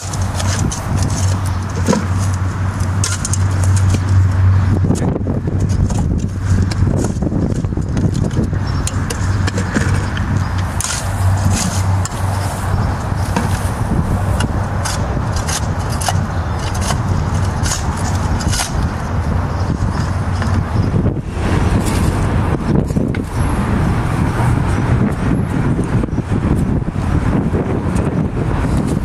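Steady outdoor noise of road traffic and wind rumble on the microphone, broken by frequent short scrapes and clicks of shovels cutting into soil and dumping it into plastic buckets.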